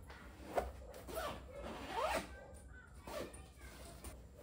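Zipper on an IKEA Söderhamn sofa cushion cover being worked in several short, quick pulls, each a brief rising zip, with fabric handled between them.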